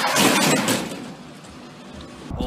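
Car tyres scrubbing and skidding on gritty asphalt as a front-wheel-drive Lada hatchback slides sideways. It is a rough, hissing noise that is loudest in the first half second, then fades away.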